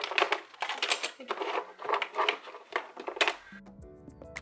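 Hands handling small electronics in a drawer, hard drives, chargers and cables in a plastic basket, with a run of irregular clicks and clatters. Background music comes in just before the end.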